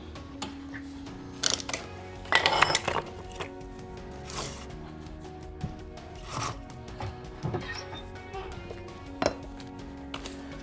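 Background music with a steady guitar bed, over which split kindling pieces knock and clack against each other a few times as they are picked up and stacked; the loudest clatter comes about two and a half seconds in.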